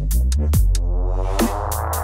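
Dubstep music: a heavy sub-bass under a sustained synth with many overtones, with sharp drum hits about half a second in and several more near the end.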